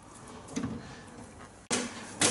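A kitchen drawer shut and a cupboard door opened: a soft bump about half a second in, then a sharp click near the end.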